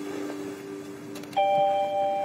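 Background score of sustained bell-like tones: a held chord fades over the first second, then a new chord of higher bell tones strikes in about one and a half seconds in.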